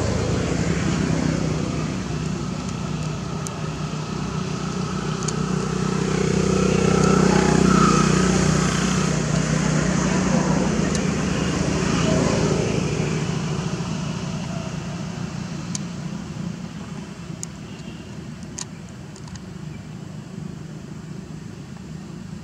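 Engine hum of a passing motor vehicle, swelling to its loudest about eight seconds in and then fading away; a few faint clicks later on.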